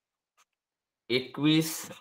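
About a second of near silence with one faint tick, then a man's voice speaking.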